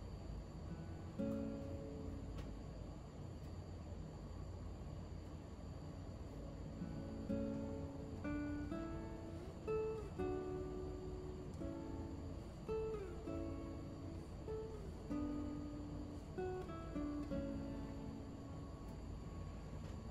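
Soft, slow instrumental background music: single plucked notes that ring on, a few of them sliding up or down in pitch.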